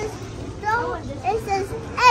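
Indistinct, high-pitched child's voice in short snatches over the background hubbub and steady low hum of a busy shop.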